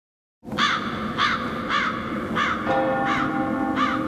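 Six crow caws, a little under two a second, over a sustained music drone that moves to a new chord about two-thirds of the way through.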